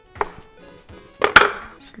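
A metal bench scraper chopping down through soft dough onto a wooden cutting board: two knocks, one just after the start and a louder one past the middle.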